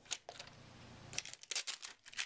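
Faint rustling and light ticks of fingers pressing and rubbing a paper sticker down onto a DVD drive's sheet-metal casing, with a quick run of crinkly ticks about a second and a half in.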